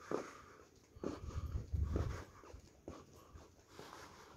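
Footsteps of someone walking along a carpeted corridor, soft thuds about once a second, with a low rumble about a second in lasting roughly a second.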